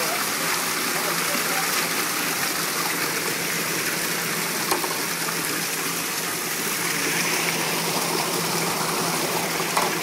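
Steady rush of flowing water through the fish lift's holding tanks, with a brief knock about halfway through and another near the end.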